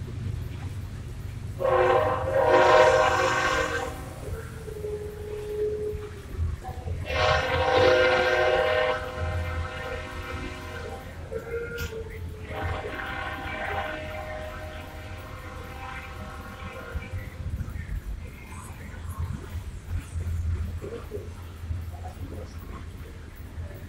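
Diesel locomotive horn sounding three long blasts a few seconds apart, the first two loud and the third longer and quieter, over a steady low rumble.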